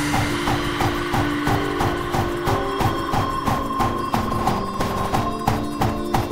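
Hardcore gabba electronic dance track: a fast, even kick-drum beat under a short repeating synth blip and held synth notes that step between pitches.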